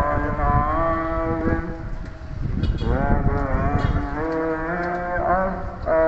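A voice chanting an Islamic dhikr melody in long, wavering held notes, with a short break about two seconds in.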